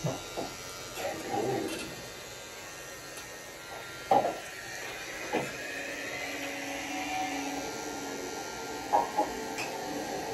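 Rotary tattoo machine running with a faint steady motor buzz, broken by a few short clicks and knocks.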